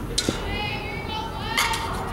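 Distant high-pitched voices of girls calling out, echoing in a large indoor space, with one sharp knock about a second and a half in.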